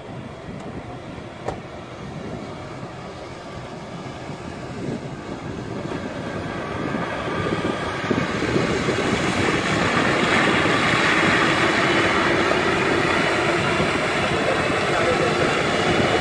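Nissan Patrol Y60 4x4 driving across a wet flat, its engine and running noise growing steadily louder from faint to loud as it comes closer.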